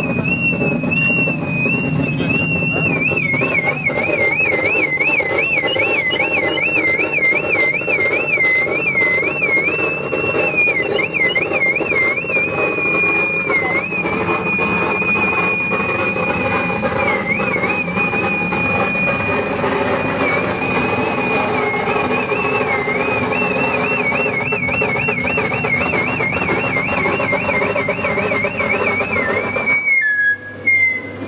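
Live electronic noise music: a dense, loud wall of distorted noise under a high, thin electronic tone that wobbles up and down a few times a second, holds steady for a while, then wobbles again before cutting off at the end.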